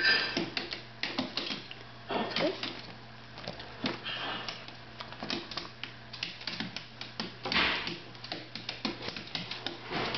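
A Lhasa Apso's claws clicking and tapping on a hardwood floor as she hops and turns on her hind legs. The clicks come in quick irregular runs.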